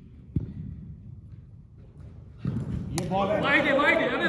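A dull thump about half a second in, then near three seconds the sharp crack of a cricket bat hitting the ball. Voices start calling out right after the hit.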